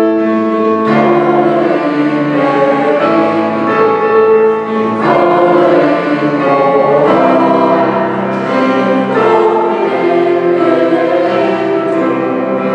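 Mixed choir of men's and women's voices singing a sacred song in sustained phrases, with piano accompaniment.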